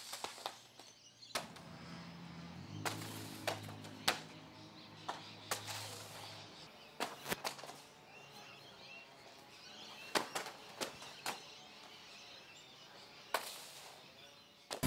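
Scattered soft thuds of beanbags being thrown and landing on a concrete court, about ten in all, with faint bird chirps.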